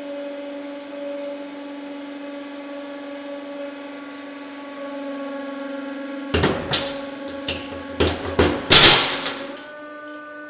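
A 150-ton hydraulic press runs with a steady hum as its ram bears down on three nested steel ball bearings. From about six seconds in come a series of sharp cracks and bangs as the bearings break. The loudest burst comes near nine seconds as they shatter apart.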